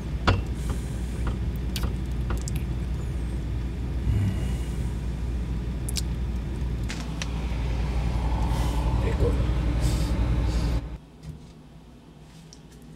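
A loud, steady low mechanical rumble like a running engine, with scattered clicks and knocks, that starts suddenly and cuts off abruptly near the end.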